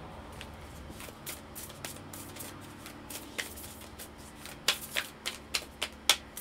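Deck of oracle cards being shuffled by hand: soft scattered card slaps, then a quick run of louder snaps, about four a second, near the end.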